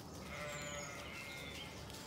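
A sheep bleating once, a call lasting about a second, with a bird chirping briefly high above it.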